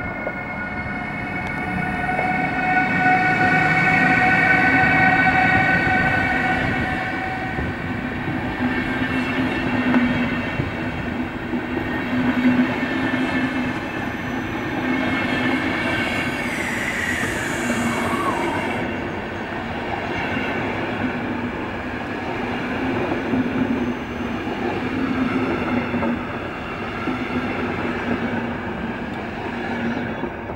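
A PKP Intercity Siemens Taurus (EU44) electric locomotive and its Intercity passenger coaches passing at speed: a loud, steady rolling of wheels on rail. High steady tones from the locomotive swell over the first several seconds, and a tone drops in pitch about halfway through as the coaches go by.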